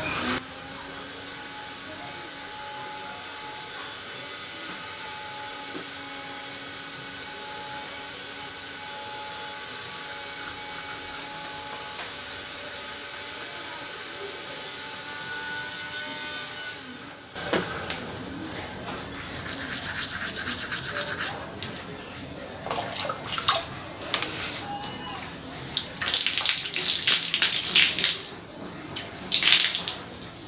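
Toothbrush scrubbing teeth through a mouthful of foaming toothpaste, in irregular rough bursts through the second half, loudest near the end. Before that only a steady low background with a few faint held tones.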